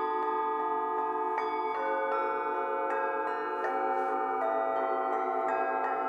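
Many metal singing bowls of different sizes struck one after another with a mallet, a new note about twice a second, each tone ringing on and overlapping the others in a sustained chord.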